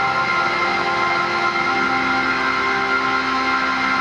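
Live band playing a slow instrumental passage of long held notes that blend into a sustained chord; a new lower note comes in about two seconds in.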